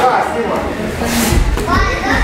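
Children's voices chattering and calling out in a gym hall, with a dull low thump a little past halfway.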